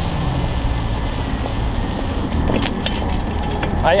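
Steady road noise from a moving bicycle: car traffic running on the adjacent road mixed with wind and tyre rush.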